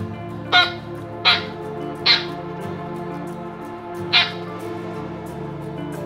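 Small poodle-mix dog giving four short, sharp yaps during tug-of-war play with a plush toy, the first three in quick succession and the last about two seconds later, over background music.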